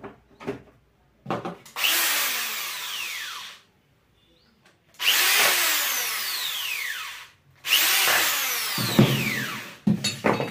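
Red electric drill run three times for two to three seconds each, its motor whine falling in pitch during each run as it slows under load. The bit is set against the screws of a plastic tool housing, so the runs are the drill driving screws in, slowing as each one tightens.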